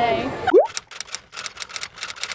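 Typewriter key-clicking sound effect: a quick, irregular run of light clicks, as if the text is being typed out. It starts about half a second in, right after a short rising swoosh, with the tail end of a voice at the very start.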